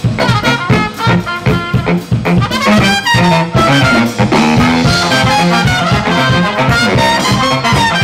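Live brass band of saxophones, trombones, trumpets and a drum kit playing an upbeat number, with a steady beat under the horns.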